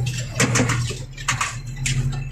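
A tractor's engine drones steadily, heard inside the cab, while the cab and fittings clink and knock a few times as the machine drives over rough forest ground.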